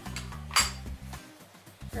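A single sharp clink of a small hard object about half a second in, over quiet background music.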